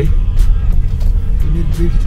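Steady low rumble of a car driving, heard inside the cabin, with background music playing over it.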